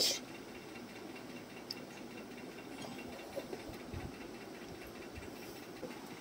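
Quiet room tone: a faint steady hiss with no clear source, opening with one brief sharp burst.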